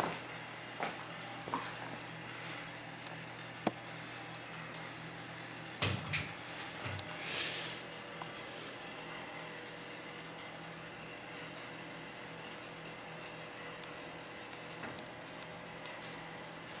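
Steady low electrical hum from the running 1930 Clavilux light organ, with scattered small clicks and a cluster of knocks and a brief rustle about six seconds in.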